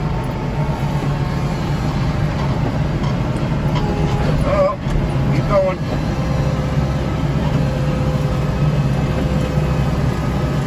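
Kubota tractor's diesel engine running steadily under load, driving a front-mounted snow blower through wet slush, heard from inside the cab as a continuous low drone with a faint steady whine above it.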